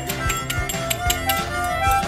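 A group of children playing small hand-held wind and percussion instruments all at once, with no tune: several overlapping held reedy tones that shift in pitch now and then, mixed with scattered clicks and rattles.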